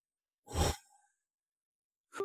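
A man's single short sigh, an audible breath out, about half a second in; the rest is silence.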